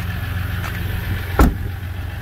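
A pickup truck's rear door shut once with a single thump about one and a half seconds in, over the steady low hum of the truck's 3.0 L EcoDiesel V6 idling.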